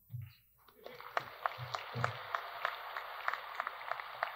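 An audience applauding: many hands clapping, coming in about a second in and running on evenly at a modest level.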